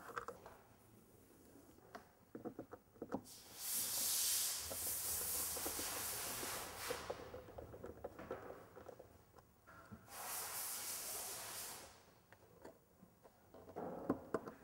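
Two long bursts of hissing pressurised air, the first about three seconds long and the second about two, with light clicks and handling noises of work on a door panel around them.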